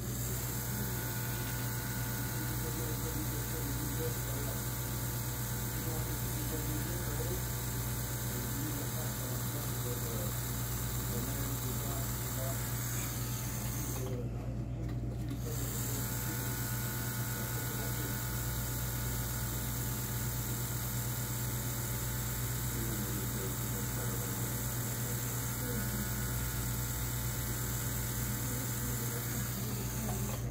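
Electric tattoo machine buzzing steadily as the needle works the skin. The buzz stops for about a second and a half around the middle, then runs again until near the end.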